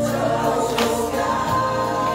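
A group of voices singing a song together over musical accompaniment, holding sustained notes over a regular beat.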